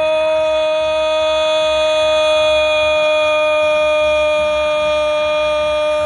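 An air horn sounding one long, loud, unwavering note, full of overtones, held through the whole stretch.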